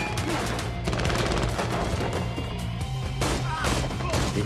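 Film soundtrack: rapid, repeated handgun fire over a steady music score.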